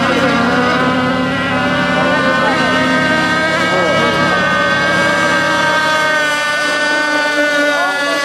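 Engines of radio-controlled racing boats running at high revs. The boats include an AC Lazer rigger with a Quickdraw 25 engine. A steady, loud high-pitched whine of several overlapping pitches that drift slightly up and down as the boats run the course.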